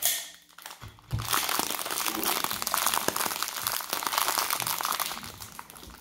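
Plastic candy wrapper of a Twizzlers sweet and sour bag crinkling as it is handled and turned over: a brief crackle at the start, then dense, continuous crinkling from about a second in until shortly before the end.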